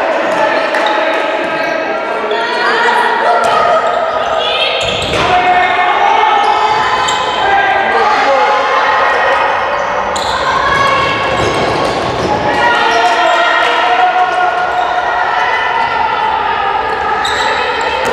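Handball bouncing on a wooden sports-hall floor as it is dribbled, mixed with players' and spectators' calls and shouts, all echoing in a large hall.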